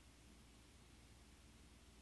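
Near silence: faint hiss and low hum of the voice-chat recording, no other sound.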